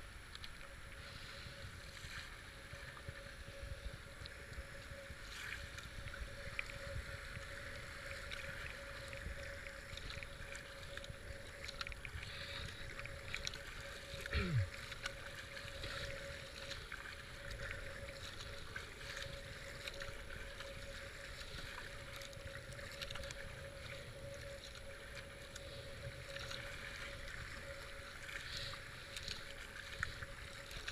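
Fast floodwater rushing and churning around a kayak's hull, with irregular splashes of paddle strokes. It is heard close up from a boat-mounted camera, with some wind on the microphone. A faint steady hum runs underneath, and about halfway through a short sound drops in pitch.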